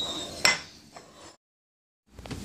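A ceramic plate knocked against a table: one sharp clink with a short ring about half a second in, then a fainter tap.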